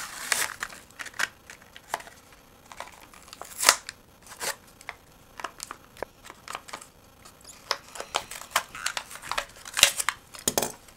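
Torn cardboard and paper being handled and set down on a table: irregular rustling and crinkling with scattered short taps and clicks, the sharpest about three and a half seconds in.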